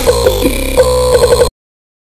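Experimental dark trap beat at 85 BPM playing its last bar of repeated pitched synth hits, ending in a quick run of short hits. The track then cuts off abruptly about one and a half seconds in, into digital silence.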